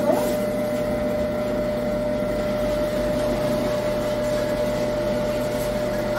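Electric food grinder with a steel hopper running steadily: a constant motor hum with a thin, steady whine, unchanging throughout.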